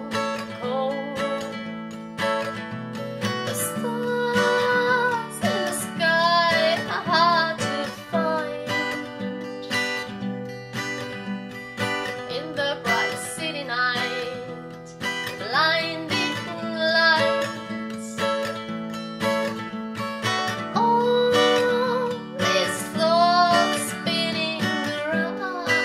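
A woman singing a slow song to her own strummed acoustic guitar, with held sung notes over steady guitar chords.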